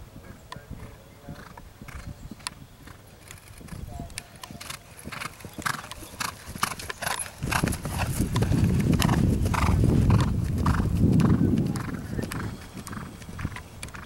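Horse cantering on turf, its hoofbeats thudding in a steady rhythm. About halfway through the hoofbeats grow louder and a deep rumble swells as the horse passes close, then eases near the end.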